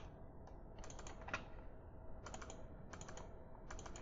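Faint clicking of a computer keyboard being typed on, in four short bursts of a few keystrokes each.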